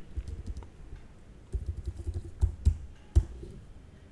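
Typing on a computer keyboard: a string of irregular keystrokes, most of them bunched from about a second and a half to three and a half seconds in.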